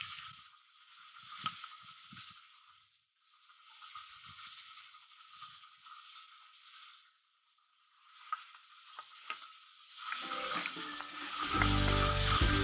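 Faint, steady sizzle of tofu deep-frying in hot oil, with a few light clicks of a metal spoon against a powder container and bowl as turmeric is spooned out. Background music comes in near the end.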